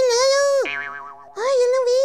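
A high, squeaky cartoon-like puppet voice making drawn-out wordless sounds, each about half a second long, held on nearly the same note with a slight wobble, with a short lower, quieter sound in a pause about a second in.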